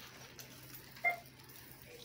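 A single short electronic beep about a second in, over shop room tone with a steady low hum.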